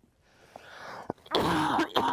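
A man draws a breath and then coughs into his cupped hands, one loud burst about a second and a half in, with a short second burst at the very end.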